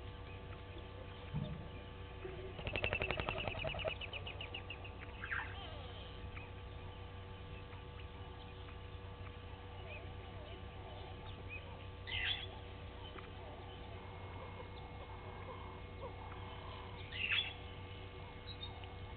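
Wild birds calling over a steady electrical hum. A rapid rattling series comes about three seconds in and is the loudest sound, followed by a falling call. Short, sharp calls come about twelve seconds in and again near the end.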